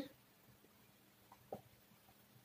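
Near silence: room tone with faint marker-on-whiteboard writing and a brief soft tick about one and a half seconds in.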